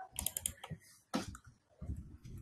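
Computer keyboard keystrokes: a quick run of about four clicks near the start, then a single louder keystroke just after a second, and a soft low thud near the end.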